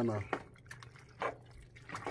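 A metal spoon stirring penne through a thick cream sauce in a pot: a few short, wet squelches about a second apart.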